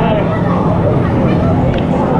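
Lazy-river water sloshing and lapping against a waterproof action-camera housing held at the surface: a loud, steady, churning rumble, with voices mixed in.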